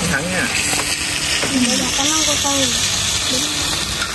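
Beef sizzling in a hot pan over a flame, a steady hiss under people's talk.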